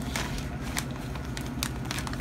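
Cardboard toy box being handled, making a few scattered light taps and crackles over a steady low hum.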